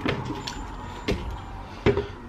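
Three short knocks of a spoon and plastic tub against a ceramic bowl while Greek yogurt is spooned in, the loudest near the end.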